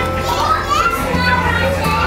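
Children's voices chattering in a busy room over background music with steady low notes.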